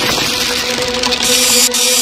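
A loud, dense crackling hiss of a sound effect, laid over sustained music tones, that cuts off suddenly right at the end.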